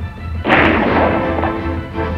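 A single gunshot about half a second in, fading over about a second, over dramatic music with held tones and a pulsing low beat.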